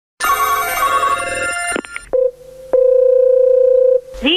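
A telephone bell rings for about a second and a half and stops. Then come two clicks with a brief tone between them, and a steady, loud telephone dial tone.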